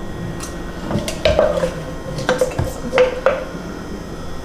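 Wooden spoon knocking and scraping against a glass pitcher of sangria as fruit slices are pushed down into it, with about six sharp knocks spread through.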